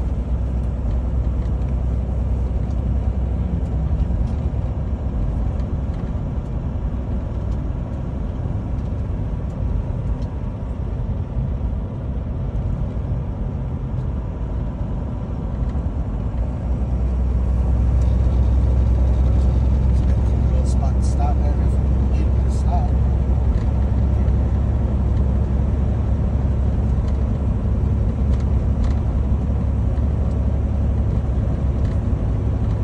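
Steady low engine and road rumble inside a semi-truck's cab while driving, growing louder and deeper a little past the halfway point, with a few faint clicks.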